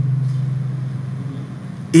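A steady low hum that fades slightly in the second half, with a man's voice starting again right at the end.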